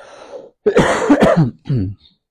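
A man coughing and clearing his throat into his hand, close on a lapel microphone: a faint breath in, then one long cough just over half a second in and a shorter one near the end.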